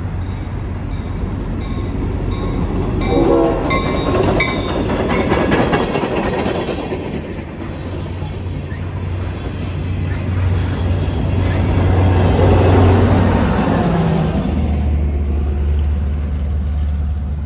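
Norfolk Southern diesel-hauled freight train passing close by. The locomotive's horn sounds for the first four seconds or so, and then the loaded tank cars roll by with a heavy rumble and rail clatter that swells and fades.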